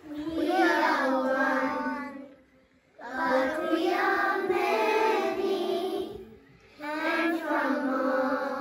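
A group of young children singing a song together in unison, in three phrases with brief pauses between them.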